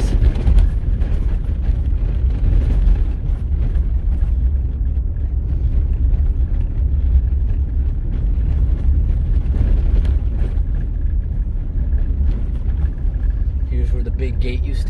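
A vehicle driving on a gravel road: a steady, loud low rumble of tyres on gravel and the running engine, with faint scattered ticks from stones under the tyres.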